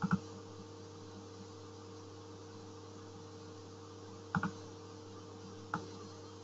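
Steady low electrical hum with two short clicks, one about four and a half seconds in and one near the end, from a computer mouse being used in the software.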